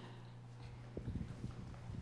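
Faint footsteps of people walking down a carpeted aisle, a few soft thuds about halfway through, over a steady low hum.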